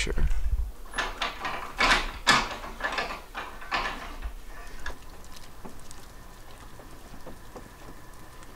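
A run of short rustles and knocks, a few a second, for about four seconds, then only a faint steady hum.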